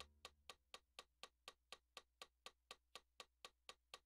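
Steady metronome clicks, about four a second, alone in a pause in the electronic keyboard playing, after the last notes die away at the start.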